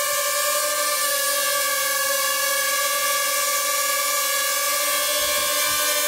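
Ryze Tello mini quadcopter hovering: its four small propellers give a steady, unchanging whine.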